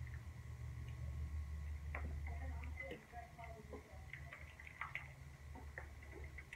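Wooden spoon stirring soup in a metal pot, with scattered light knocks and clicks against the pot, over a low hum that eases about three seconds in.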